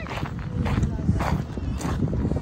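Footsteps crunching on crushed dolomite sand, about two steps a second, over a low steady rumble.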